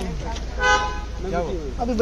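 A vehicle horn honks once, briefly, a little over half a second in, a single steady tone with no change in pitch.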